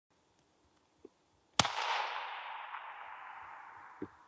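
A single shot from a .222-calibre hunting rifle about one and a half seconds in: a sharp crack followed by a long echo that fades away over the next two seconds.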